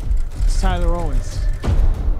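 Movie-trailer soundtrack with heavy, deep bass music. About half a second in, a voice calls out briefly, falling in pitch. A sharp hit comes near the end.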